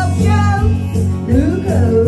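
A woman singing into a handheld microphone over accompanying music.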